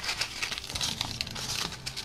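Black folded wrapping crinkling and rustling as it is unfolded by hand, in irregular crackles.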